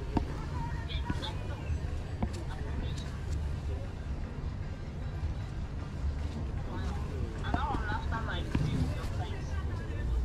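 Open-air flea market ambience: indistinct voices of people talking nearby, clearest about three quarters of the way through, over a steady low rumble.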